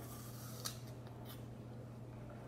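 A person biting and chewing a crisp apple: a sharp crunch about two thirds of a second in, then a softer one, over a steady low hum.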